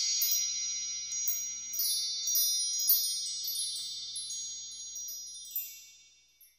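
Chime sound effect for an intro: several high ringing tones held together, with brief tinkling notes sprinkled over them, slowly fading away until it dies out at the end.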